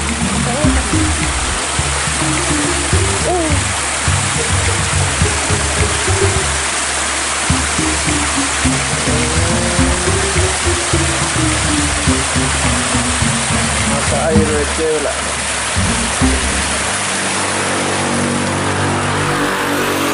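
Spring water pouring out of a rock cleft and splashing down over stones in a steady rush.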